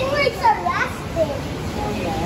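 A young child's high voice calling out and babbling, mostly in the first second, over steady background noise.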